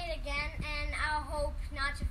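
A young girl singing, her voice holding a few notes in turn.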